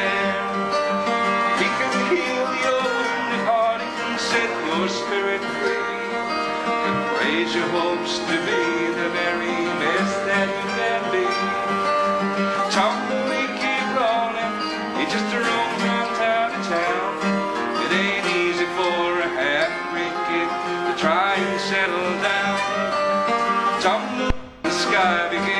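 Steel-string dreadnought acoustic guitar being played, a steady instrumental passage between the sung verses of a folk song.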